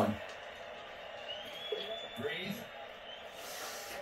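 Mostly quiet room, with a faint man's voice saying "breathe" a little over two seconds in.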